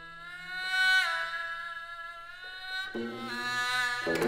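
Haegeum (Korean two-string fiddle) holding a long bowed note in a slow gagok melody, sliding up to a higher pitch about a second in and sustaining it. Near the end a lower plucked string note joins.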